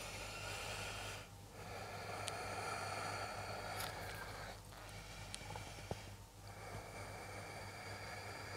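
A woman breathing slowly and audibly, in several long breaths of a few seconds each with short pauses between them.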